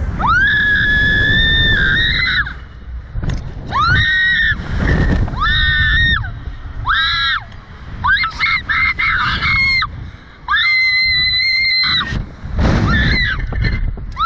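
A young woman screaming repeatedly on a thrill ride: a long high scream at the start, a run of shorter screams, then another long scream near the end, over a low rush of wind on the microphone.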